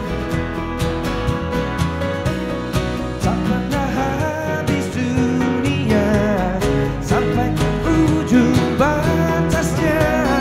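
Live acoustic band music: an acoustic-electric guitar plays, with bass and keyboard, and a man's lead vocal comes in about three and a half seconds in.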